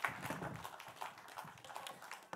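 Light audience applause at the close of a talk, a patter of scattered claps dying away over two seconds.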